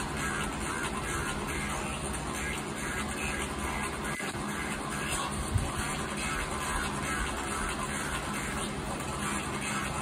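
Music playing over a steady rushing noise, with a single soft thump about halfway through.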